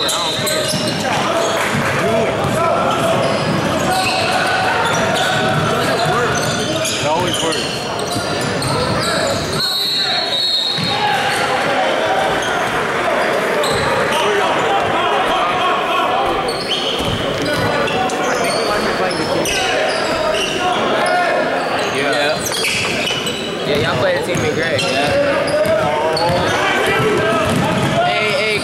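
A basketball bouncing on a hardwood gym floor during play, mixed with the chatter and calls of players and spectators in an echoing gymnasium.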